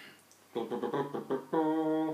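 A man's voice singing a short wordless tune: several quick notes, then one long held note.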